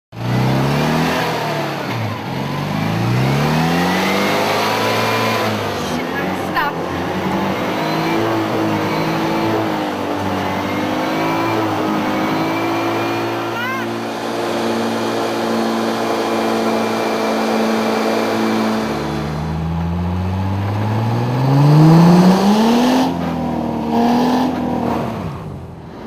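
Citroën 2CV's air-cooled flat-twin engine revving while the car is stuck in mud: the revs climb over the first few seconds, hold high and steady for a long stretch, drop, then climb again to the loudest point near the end.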